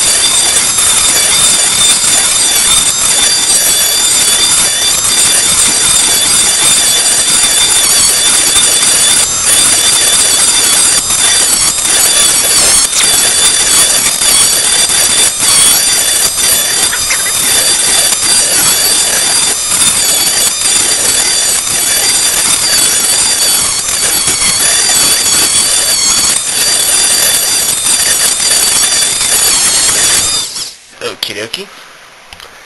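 Dremel rotary tool running at high speed, its bit grinding away the plastic around the centre hole of a DVD: a loud, steady high whine with rough scraping that wavers slightly as the bit bites, cutting off at the very end.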